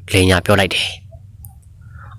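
A low-pitched voice narrating a story, with one short phrase in the first second and then a pause.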